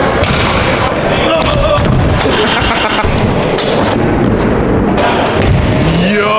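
Busy indoor skatepark: stunt scooter wheels rolling on wooden ramps with thuds from riders, over continuous background chatter of people.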